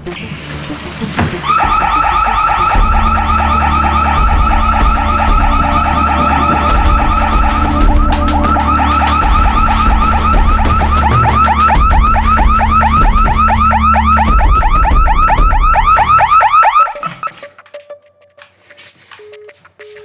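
Electronic intruder alarm siren sounding loudly. It starts about a second and a half in with a multi-tone warble that turns into rapid repeated sweeping chirps, several a second. It cuts off suddenly about three seconds before the end.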